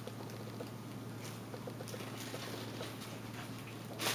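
Tissue wrapping paper rustling and crinkling faintly as hands rummage through a box, with a few soft rustles about a second and two seconds in, over a steady low hum.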